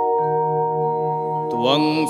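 A steady held chord of sustained keyboard tones, with the low note changing just after it starts. About one and a half seconds in, a man's voice begins chanting a Sanskrit hymn to the goddess Durga over the chord.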